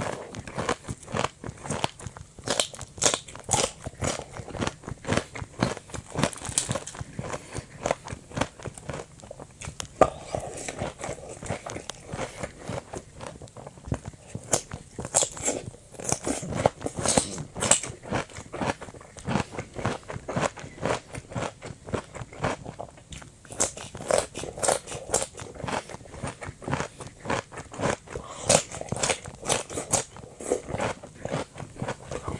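Close-up chewing of dressed salad: crisp, wet crunches of lettuce and cucumber in a steady rhythm of bites, picked up by in-ear binaural microphones.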